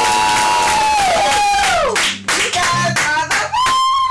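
The final sung line of the song is held as a long note and fades out about two seconds in. Clapping and short whoops from the band and onlookers follow.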